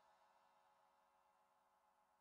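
Near silence: a gap in the soundtrack.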